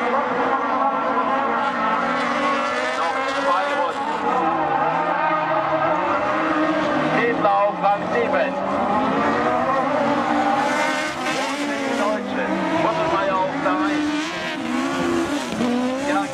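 Autocross racing car engines at race speed, loud and continuous. Their pitch drops and climbs back several times as the drivers lift off and accelerate through the corners.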